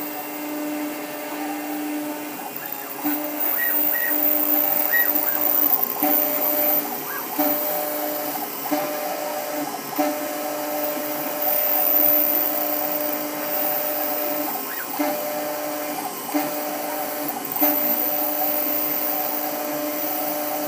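New Hermes Vanguard 4000 engraving machine running a job: a steady motor whir, with a whine at two pitches that starts and stops every second or so as the head moves through the strokes of the design. The diamond drag tip is engraving anodized aluminum.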